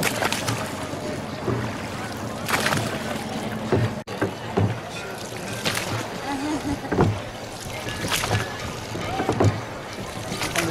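Rowboat oars dipping and splashing in river water in regular strokes, about one every second or so, over a steady watery background. The sound breaks off for an instant about four seconds in, then the strokes go on.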